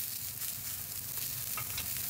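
A block of beef searing in a hot steel frying pan, sizzling with a steady hiss and small pops as its outside browns for roast beef.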